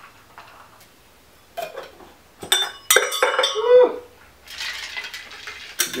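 Clinks and scrapes of a stainless steel cocktail shaker being handled and its metal cap fitted on, in a cluster of sharp strikes with a brief ring, about one and a half to four seconds in. A soft rushing noise follows near the end.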